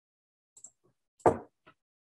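A coffee mug set down on a desk: one sharp knock about a second and a quarter in, with a few faint clicks around it.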